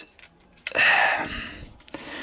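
A long, breathy sigh of frustration starting about half a second in and fading away, followed near the end by a light click of plastic toy parts being handled.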